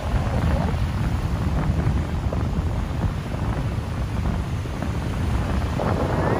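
Strong wind buffeting the phone's microphone in an uneven low rumble, over the wash of waves breaking on the beach.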